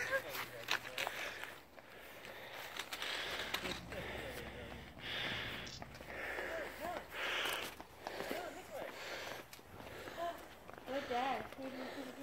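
Footsteps and movement outdoors, with short scuffing or rustling sounds every second or two and faint voices calling now and then.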